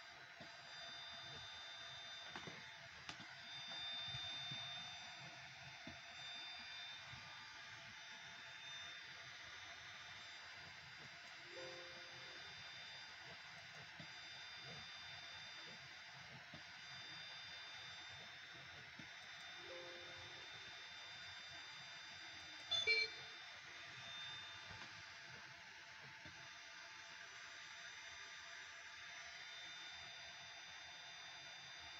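Faint steady electronic whine from the motors and drivers of a desktop CNC laser engraver kit running a test program, several thin high tones over a light hiss. Two brief low tones sound partway through, and a short louder blip comes about three-quarters of the way in.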